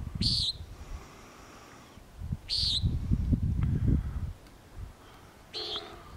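Common nighthawk giving three short, nasal 'peent' calls in flight, about two and a half to three seconds apart. A low rumble, louder than the calls, sounds at the start and again for about two seconds in the middle.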